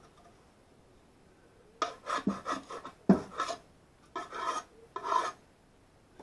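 Tools and parts scraped and shuffled across a cluttered workbench while rummaging for a countersink bit: a run of short scraping strokes with one sharper knock about three seconds in.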